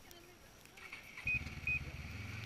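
A snowmobile engine starts abruptly a little over a second in and settles into a steady idle, with two short high beeps as it catches.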